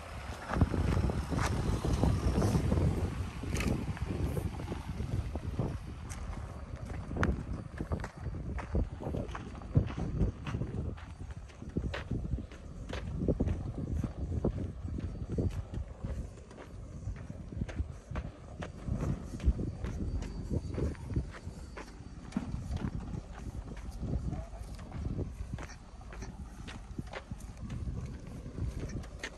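Footsteps crunching on a dry, rutted dirt track, a steady run of irregular knocks. Under them is the low sound of the Lexus RX300's V6 engine and tyres crawling slowly over the rough ground, strongest in the first few seconds.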